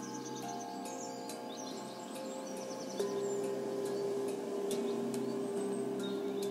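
Ambient meditation music of long held synth tones, with a new, stronger note entering about halfway, under a nature recording of birds chirping.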